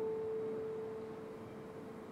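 A single mid-range grand piano note, held and slowly dying away as it rings on.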